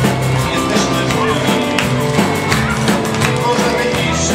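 Live rock band playing with drum kit, keyboard and guitar, amplified through a small PA.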